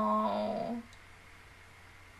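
A pet dog gives one short whine that falls in pitch, then levels off and stops a little under a second in.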